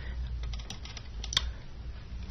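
A few faint, sharp clicks, the clearest about two-thirds of a second and just over a second in, over a low steady hum.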